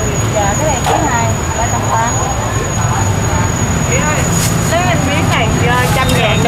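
Voices talking in the background over a steady low traffic rumble, with a few sharp knocks.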